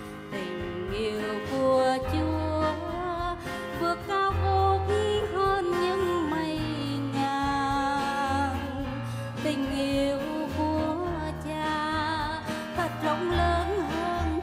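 A woman singing a Vietnamese Christian song over instrumental accompaniment with a bass line that moves every second or two.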